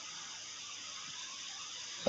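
Faint steady hiss of the recording's background noise, with no speech.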